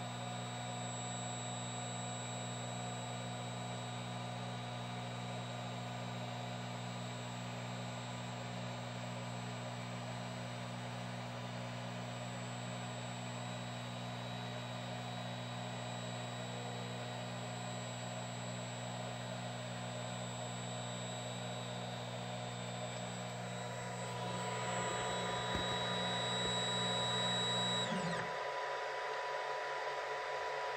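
Flashforge Guider 2 3D printer's Z-axis stepper motor driving the build plate during the bed-levelling routine: a steady, even-pitched hum with a high whine. It stops suddenly about two seconds before the end, leaving a fainter steady hum.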